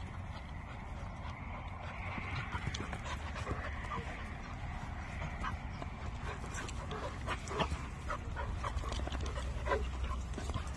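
Two dogs play-wrestling, with short scattered vocal sounds and scuffling that get busier in the second half.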